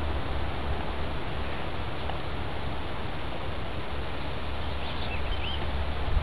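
Steady outdoor background noise with a low rumble on the microphone, and two or three short bird chirps about five seconds in.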